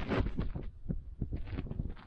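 Footsteps and handling noise of someone moving through a cluttered room: irregular clicks and knocks over low thumps.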